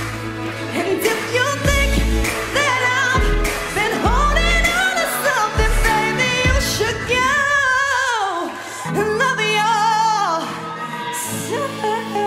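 A woman singing a pop ballad into a microphone over a backing track. A deep beat pulses in the first half, then drops out about six seconds in. A falling vocal run follows, and she holds notes over steady sustained backing.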